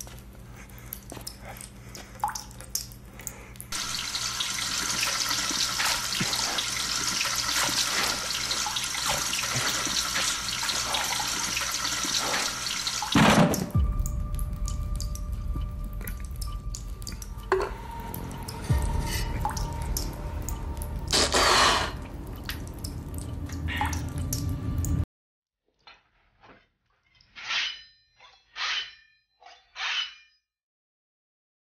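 Water dripping, then a long stretch of water pouring and splashing, with a low rumble and scattered knocks after it. Near the end, after a sudden drop in sound, a few separate strokes of a metal blade drawn across a wet whetstone, each with a slight ring.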